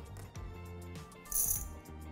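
Whole roasted coffee beans tipped from a metal scoop into a glass jar, a few small clicks and then a brief clatter of beans on glass about halfway through, over background music.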